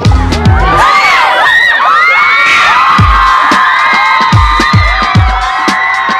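A large crowd screaming and cheering, many high voices shrieking over one another. A kick-drum beat comes back in about halfway through.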